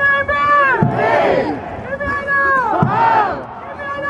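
Football fans' call-and-response spelling chant: a lead voice calls out on a held pitch and the crowd shouts back a letter in answer, twice, about two seconds apart.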